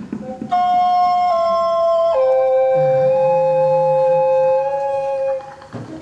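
Music: long held keyboard notes with an organ-like tone, the pitch stepping down twice, with a lower held note coming in about halfway; the notes stop shortly before the end. A few light clinking sounds come before the first note.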